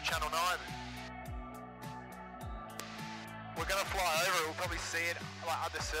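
Background music: a song with a wavering singing voice over a beat of deep bass strokes that fall in pitch.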